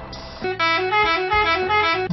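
Bus horn sound effect honking a quick run of notes that step up and down, after a brief rush of noise at the start.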